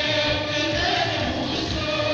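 A group of voices singing together over a steady low drum beat, as live stage music heard from the audience in a large hall.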